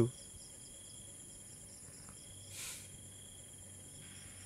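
Night insects chirring steadily in high, continuous, finely pulsing tones, with a brief soft breathy hiss about two and a half seconds in.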